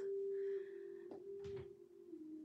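A single soft, steady note held like a pure tone, part of slow background music made of long sustained notes. There are one or two faint clicks a little after a second in.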